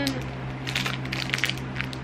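Crinkling and crackling of a plastic pen package being handled, a quick run of crackles starting about half a second in.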